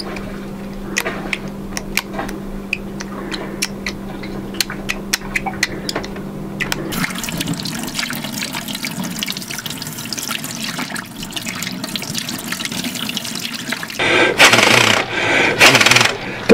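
Small clicks from a masthead anemometer's cups and shaft being handled over a steady hum, then tap water running at a stainless galley sink as the seized anemometer is rinsed of salt and dirt to free its bearing. A louder hissing rush comes near the end.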